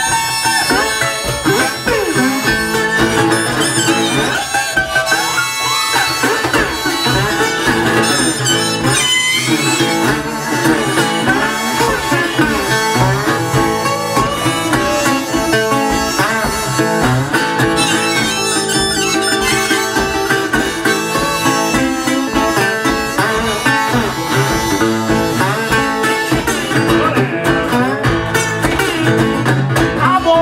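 Live blues instrumental break: harmonica played from a neck rack over fingerpicked acoustic guitar, with a steady low beat under it.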